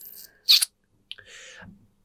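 Breathing close to a microphone: a short, sharp breath about half a second in, then a softer, longer breath a little after a second, with no words.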